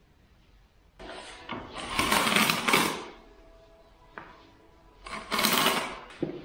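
Steel trowel scraping and spreading tile adhesive across a concrete floor, in two rasping bouts: a longer one starting about a second in and a shorter one near the end.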